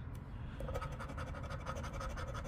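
A coin scraping the latex coating off a scratch-off lottery ticket in quick, repeated strokes.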